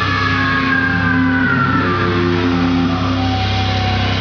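Loud amplified electric guitars sustaining a droning chord over a steady low hum through the PA, with a high feedback-like tone slowly gliding downward over the first two seconds, as the song rings out.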